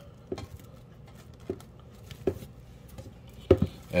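Plastic cling wrap crinkling as it is stretched and pressed over a stainless steel pan, with a few sharp crackles or taps spaced unevenly, the loudest near the end.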